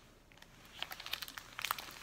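Foil-lined snack-bar wrapper crinkling as it is peeled open, a quick run of crackles starting partway in.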